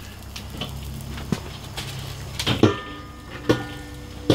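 Metal pot and utensils clanking about two and a half and three and a half seconds in, each clank leaving a short ringing tone. Small clicks and a low steady hum run beneath, as hot dogs go into a pot of near-boiling water.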